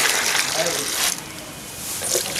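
Fresh milk poured and splashing into a plastic measuring mug and bucket, a loud rushing pour for about the first second that then goes quieter. The milk is being measured out mug by mug to check the cow's yield.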